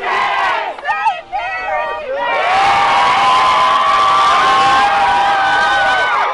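A crowd of students shouting and cheering. About two seconds in, the voices merge into one long, loud held yell that stops at the very end.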